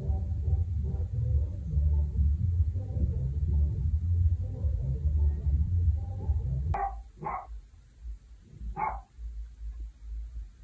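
A dog barking in the apartment upstairs, heard muffled through the ceiling: three short barks near the end. Before them a low, muffled rumble comes through the ceiling from upstairs and stops just before the barking.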